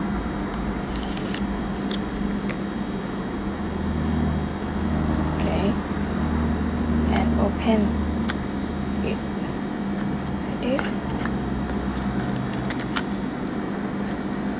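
Steady low room hum with a few light clicks and ticks of steel instruments and suture packaging being handled.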